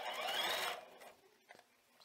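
Knit fabric rustling for under a second as it is handled under the sewing machine's presser foot, then near silence with one faint tick.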